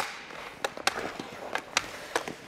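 A sharp click of a hockey stick on the puck, then skate blades and goalie pads scraping across the ice, fading over about a second. Several lighter stick-on-puck clicks fall near the middle.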